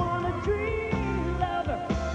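Live band music with singing: a sung melody over bass notes and a steady drum beat.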